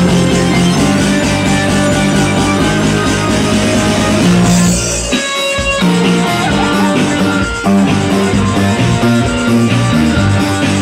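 Live rock band playing loud, with electric guitar over a driving beat. The bass and drums drop out briefly about five seconds in, then come back.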